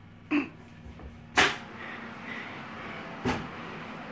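Oven door and a baking dish being handled at the oven rack: a knock, then a sharp clank about a second and a half in, and another knock near the end, over a faint steady hum.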